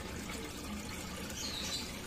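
Steady trickling of water.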